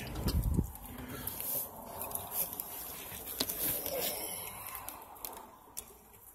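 Pickup truck door being opened and handled, with a low thump right at the start, followed by quiet outdoor background with a few faint clicks.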